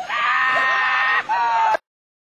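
A person's long, high shout held for about a second, then a shorter second shout; the sound cuts off suddenly near the end.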